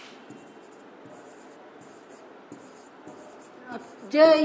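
Pen tip drawing on an interactive whiteboard's surface: faint, short scratchy strokes that come and go, over low room hiss.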